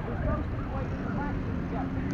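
Outdoor playground ambience: faint, scattered children's voices in the distance over a steady low rumble.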